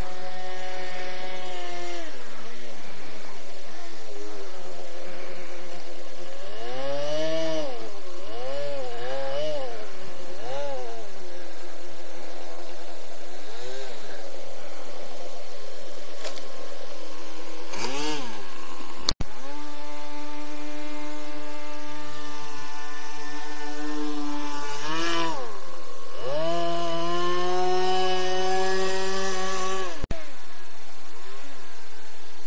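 Small motor and propeller of a radio-controlled airboat running continuously, its pitch rising and falling several times as the throttle is opened and eased off. The sound cuts out for an instant a little after halfway.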